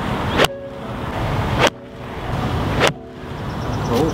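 Golf iron striking a ball off the tee about half a second in. Two more sharp clicks follow, a little over a second apart, over a steady outdoor rumble that swells between them.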